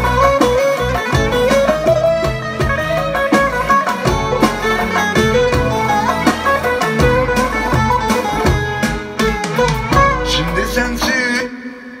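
A recorded Turkish folk piece led by an electric bağlama, a plucked long-necked lute, plays back loudly over studio monitors with bass and percussion underneath. The music stops near the end.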